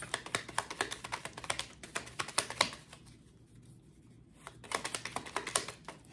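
Tarot cards being shuffled by hand: a quick run of crisp card clicks that stops for a moment about halfway through, then starts again.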